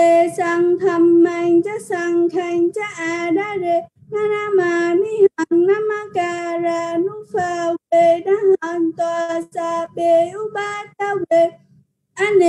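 A single high voice chanting Pali verses syllable by syllable on a near-monotone, pausing briefly for breath a few times.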